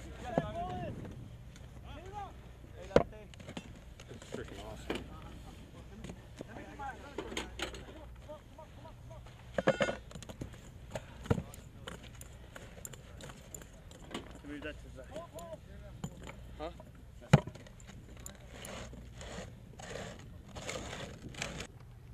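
Ammunition handling: artillery projectiles and brass cartridge cases knocking and clinking against each other and the wooden crates. There are a few sharp metallic clicks spread through and a short rattling cluster near the middle, over a low steady rumble.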